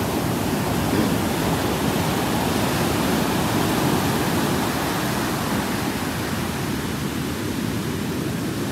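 Ocean surf: a steady rush of waves breaking and foam washing up over the sand at the shoreline.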